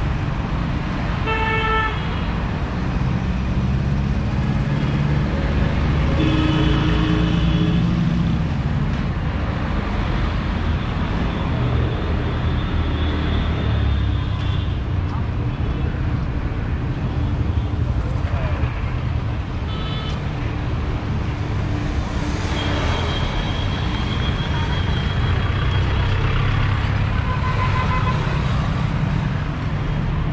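Busy city street traffic: vehicle engines running with a steady rumble, and car and bus horns honking repeatedly, mostly short toots with a longer honk past the middle.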